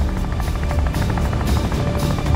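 Background music over the rotor noise of a large military transport helicopter, its blades beating fast and evenly.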